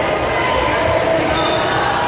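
Chatter and calls from players and spectators in a reverberant school gymnasium between volleyball rallies, with a few short sharp sounds from the court.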